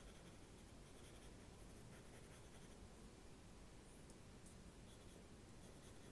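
Faint scratching of a pencil sketching on sketchbook paper, in several short strokes.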